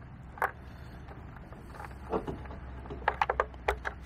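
Small clicks and taps of a tether cable's connector being handled and fitted onto the plastic hull of a Gladius Mini underwater drone. There are a couple of single clicks, then a quick run of clicks near the end, over a steady low rumble.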